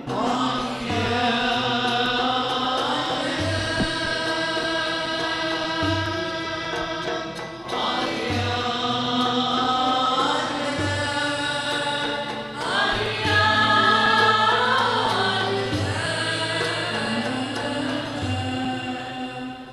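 Gharnati (Andalusian classical) music: a chorus singing long, drawn-out melodic lines with oud accompaniment, over a low beat about every two and a half seconds.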